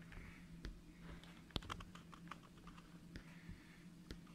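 Faint handling noise: a run of small clicks and taps, with one sharper click about a second and a half in, over a low steady hum.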